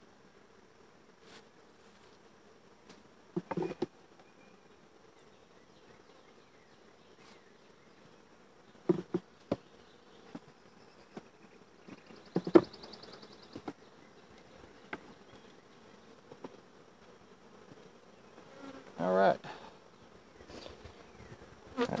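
Honeybees buzzing around an opened hive, broken by a few knocks of wooden hive boxes and frames being handled. The loudest knock comes about halfway through, and a longer scrape follows near the end.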